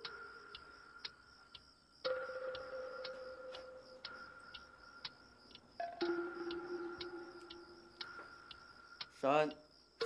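Film soundtrack: held, drawn-out tones that change about every two seconds over a steady ticking of roughly two ticks a second. Near the end a short, loud voice sound with a sliding pitch cuts in.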